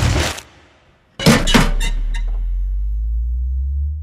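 Sound-design sting for an animated logo: a swelling whoosh cuts off, then after a short gap comes a sharp hit with a few quick clicks, and a deep low tone holds and fades near the end.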